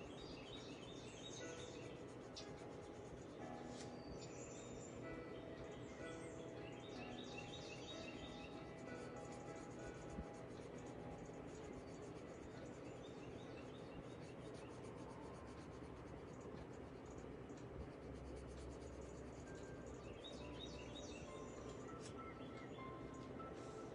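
Faint scratching of a colored pencil on paper, worked in small circles to lay down a base layer, with soft music playing underneath.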